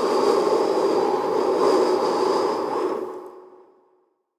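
A steady rushing transition sound effect with a few faint held tones in it, fading out over the last second.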